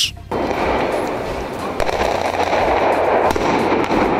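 Firecrackers going off in a rapid string of sharp bangs from about two seconds in, over a steady din of crowd noise.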